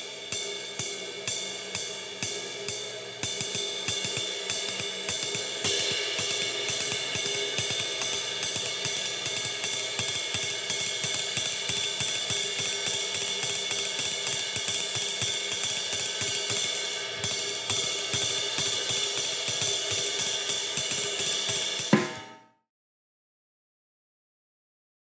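Bosphorus ride cymbal played with a wooden stick in a fast swing ride pattern, the stick thrown at the cymbal and left to rebound, with the rest of the drum kit lightly beneath. It starts at a moderate pace, settles into a dense, steady fast tempo after about three seconds, and ends on one sharp accent near the end before cutting off.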